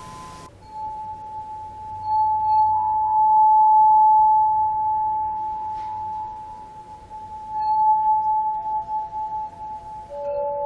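A sustained, pure, bell-like ringing tone, as from a tuning fork or singing bowl. It swells over the first few seconds and then slowly fades, and a second, lower tone joins near the end.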